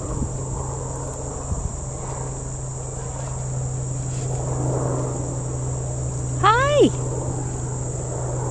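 Steady high-pitched chirring of insects over a low steady hum. A person's short call rises over it near the end.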